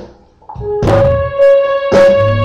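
A live band opening a song: a drum hit dies away, and after a short gap the band comes in with a struck chord that rings on, with a second hit near the end.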